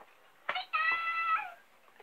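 Talking Pikachu plush toy's small speaker playing a short, high-pitched Pikachu voice cry, set off by a press on its stomach: a click about half a second in, then the cry, which dips at the end.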